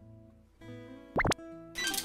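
A short edited-in logo jingle: soft sustained musical tones with one quick rising pop sound a little past a second in.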